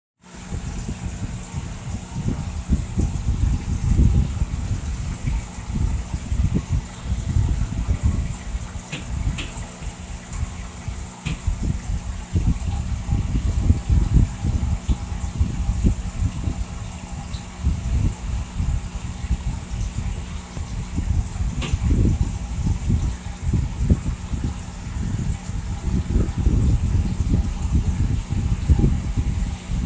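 Aquarium water noise: a submersible pump and air-stone bar running, the water gurgling and bubbling unevenly over a steady low hum.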